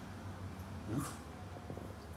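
A man's short questioning "hmm?" about a second in, rising in pitch, over quiet kitchen room noise.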